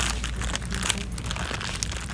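Crinkling and crackling handling noise close to the microphone, over a steady low hum.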